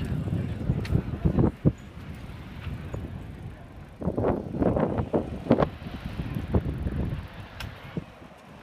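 Outdoor street ambience: wind buffeting a handheld microphone as a low, uneven rumble, with snatches of passers-by's voices, busiest about four to six seconds in.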